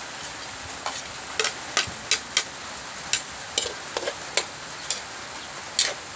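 Metal spoon tapping and scraping against a plate as chopped vegetables are pushed off it into a wok: about a dozen sharp, irregular clicks over a steady hiss.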